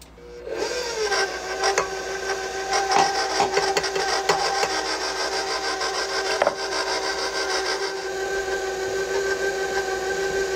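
KitchenAid stand mixer switching on about half a second in, its motor whine settling quickly into a steady pitch as it runs on low. The flat beater churns thick buttercream frosting in the steel bowl, with a few scattered clicks over the motor.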